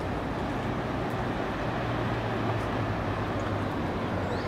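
Steady outdoor background rumble with a constant low hum and no distinct events.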